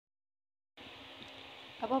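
Dead silence for a moment where the recording is cut, then a faint steady hum of background room noise, until a voice starts speaking near the end.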